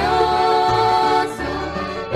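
A women's vocal group singing a Portuguese-language gospel hymn over instrumental accompaniment, in several voices. One long note is held with a slight vibrato for a little over the first second, then the melody moves on.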